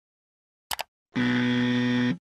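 Two quick clicks, then a steady electronic buzzer sound effect: a flat, rich buzz that holds for about a second and cuts off sharply.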